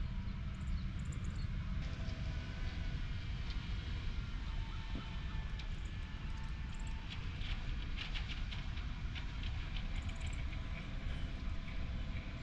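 Distant concrete mixer truck running as it creeps slowly toward the site: a low, steady rumble with faint engine tones above it.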